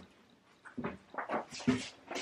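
A pet animal making a series of short sounds, starting a little after half a second in.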